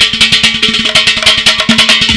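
Live band music with a fast, dense drum and percussion beat under sustained electric guitar and keyboard notes.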